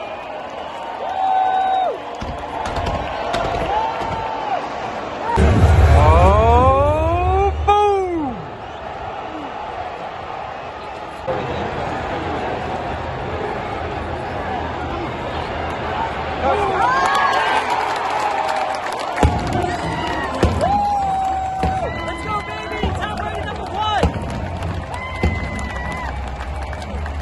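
Football stadium crowd noise: a din of many fans' voices and cheers mixed with music over the stadium PA. About six seconds in it swells, with loud calls that rise and then fall in pitch.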